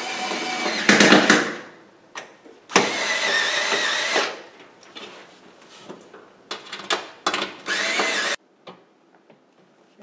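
Cordless drill/driver running in several short bursts, driving screws tight into the metal frame of an oven door, its motor whining through each run. The sound cuts off suddenly near the end.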